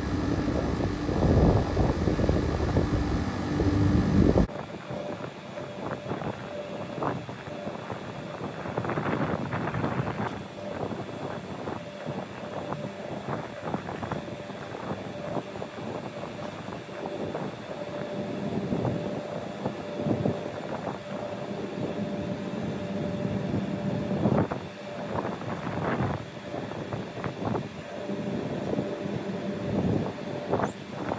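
Outdoor axial fans of a Temperzone OPA 550 rooftop package unit running and speeding up as their 0–10 V control signal climbs in heating mode. They are louder for the first four seconds or so, then quieter with a faint steady tone.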